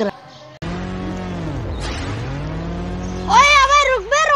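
Edited-in electronic sound effect that starts suddenly about half a second in: a steady hum whose pitch sweeps down and then climbs back up. Near the end a loud, high-pitched warbling tune takes over.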